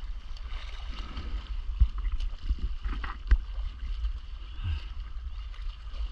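Water lapping and sloshing around a stand-up paddleboard, with a steady low wind rumble on the microphone. Two sharp splashes or knocks come about two and three and a half seconds in.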